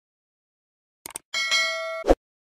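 Two quick tap clicks about a second in, then a bright bell ding, a notification-bell sound effect, ringing with several tones and cut off abruptly after about two thirds of a second.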